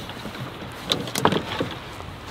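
Golf clubs clinking in a cart bag as an iron is drawn out, with a couple of light knocks about a second in, over faint steady outdoor noise.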